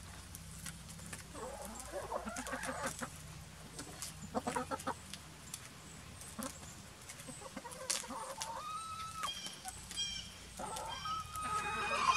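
Domestic hens clucking softly while feeding on broccoli leaves: short calls in the first half, then two longer, drawn-out calls in the second half, over scattered light ticks of pecking.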